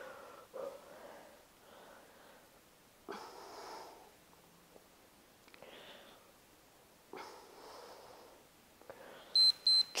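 A woman's hard breaths out as she presses heavy dumbbells, one every few seconds. Near the end, two short high beeps from an interval timer mark the end of the work interval.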